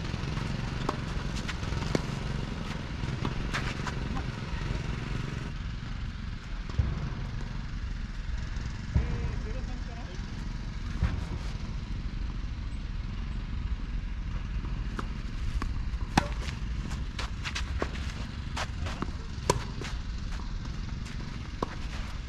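Tennis ball strikes from racket hits and bounces during a rally, sharp pops at irregular intervals a few seconds apart, over a steady rumble of wind on the microphone.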